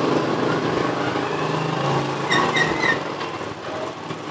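Small motorcycle engines running as the bikes ride up and stop in front of the stall. A few short high chirps come about halfway through.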